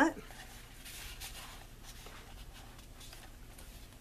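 Faint rustling and light brushing of cardstock pages and flaps being handled and turned in a handmade paper mini album.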